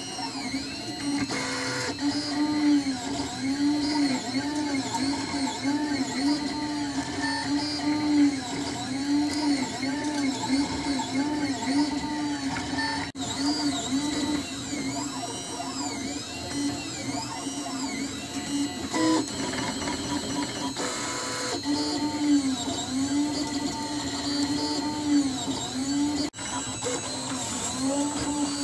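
Printrbot Simple Metal 3D printer printing: its stepper motors whine in repeated rising-and-falling arcs as the print head and bed move back and forth, over a steady high tone. The pattern breaks off abruptly about halfway through and again near the end.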